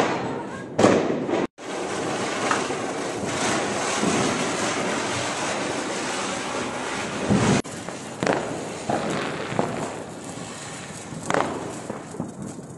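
Ground firework fountains (anar) spraying sparks with a steady hiss, broken once by a brief dropout, with several short loud firecracker bangs over it.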